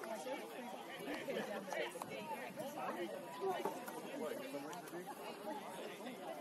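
Several people talking at once in overlapping chatter, no single voice standing out clearly.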